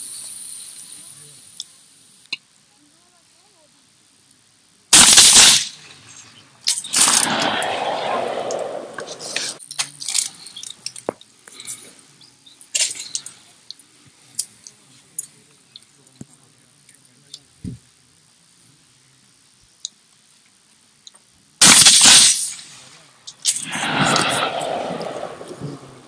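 Ata Arms SP1 Slug over-under shotgun firing slugs: two shots about sixteen seconds apart. Each shot is followed by a couple of seconds of rolling sound.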